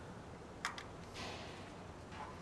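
Faint handling sounds of a multimeter test lead being moved onto the starter's negative terminal: two light clicks about two thirds of a second in, then a soft rustle.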